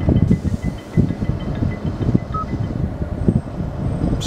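Ambient soundscape from the Bose 'Sounds of Nature' feature playing through the car's cabin speakers: a dense low rumble with irregular knocks. A short high beep sounds about two and a half seconds in.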